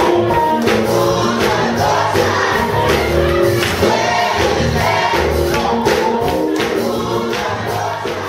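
A gospel choir singing together, with a steady percussive beat underneath.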